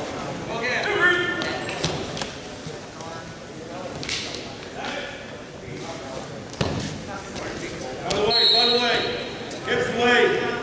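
Shouts from coaches and spectators echoing around a gymnasium during a wrestling bout, loudest about a second in and again near the end. There are a couple of sharp thuds in between.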